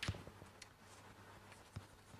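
Chalk writing on a blackboard: faint, irregular taps and scratches of chalk strokes, the sharpest right at the start.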